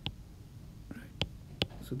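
Three sharp clicks of a stylus tapping on a tablet's glass screen while erasing marks from a handwritten formula, one right at the start and two more a little over a second in, with a faint breath between.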